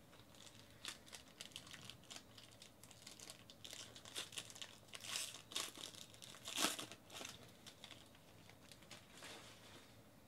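A silver foil trading-card pack wrapper being crinkled and torn open by hand: a quiet, uneven run of crackles and rustles, with the loudest rip about two-thirds of the way through.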